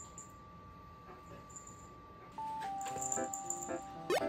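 Quiet room tone with a few faint light clicks, then cute, bouncy background music with plinking melody notes and shaker-like percussion that starts about two and a half seconds in.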